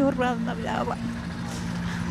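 A voice breaks off in the first half-second, then a steady low hum with two held tones carries on over faint outdoor background noise.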